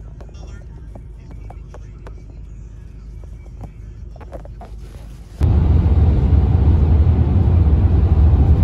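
Car cabin noise in a moving taxi: a low steady road rumble with a few faint clicks. About five seconds in, it switches suddenly to a loud, steady rush of road and wind noise from driving at speed.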